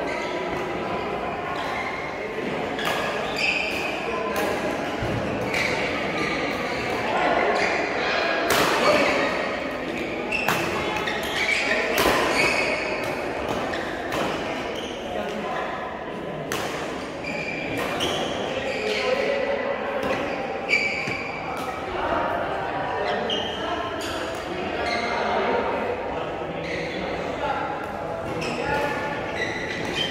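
Badminton rackets hitting a shuttlecock in rallies: sharp, irregular cracks, with thuds of players' feet on the court floor. The hits echo in a large hall over indistinct voices.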